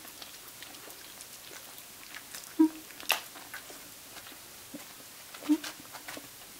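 Small dog making two short, low vocal sounds, about two and a half and five and a half seconds in. A sharp click comes just after three seconds, with light scattered ticks from the dog moving on the cushion.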